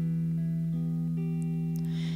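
Telecaster-style electric guitar playing a slow instrumental passage over a steady, unchanging low drone; higher notes change twice above it.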